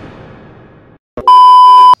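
Intro music fading out over the first second, then, after a click, a loud, steady electronic beep tone that lasts about two-thirds of a second and cuts off abruptly.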